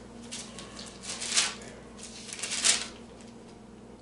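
Pages of a Bible being turned, two rustling page flips about a second and a half apart.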